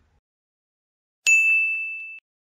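A single bell 'ding' sound effect, a notification-bell chime for the subscribe animation. It is struck once about a second and a quarter in and rings on as one bright tone that slowly fades.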